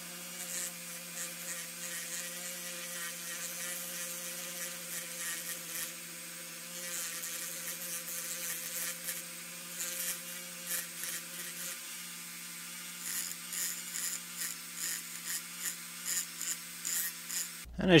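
Small handheld rotary tool with an abrasive cut-off disc grinding the rear of a diecast metal toy car body. The motor runs at a steady whine, with scratchy grinding that comes and goes as the disc touches the metal, more often in the second half. It stops just before the end.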